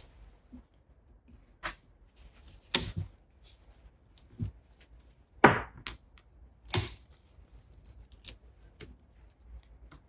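Bonsai pliers snapping and crushing the dry deadwood of a Japanese white pine to shorten the jin: a string of sharp cracks, the loudest about halfway through, with smaller clicks and crackles between.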